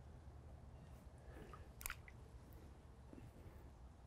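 Near silence: faint wet swishing and dripping of lake water as a long-handled rake is worked through weed in shallow water, with one sharp click about two seconds in.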